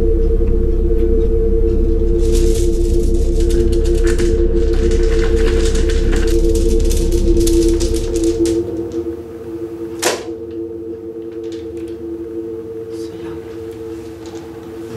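A suspense drone of two held low tones over a rumble, with a flurry of rapid clicks for several seconds. The rumble drops out a little after halfway, and a single sharp hit comes soon after.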